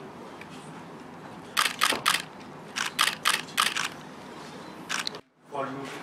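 Camera shutters clicking in quick runs over a steady room background: three clicks about a second and a half in, four more around three seconds, and a single one near five seconds. These are press cameras photographing a posed group.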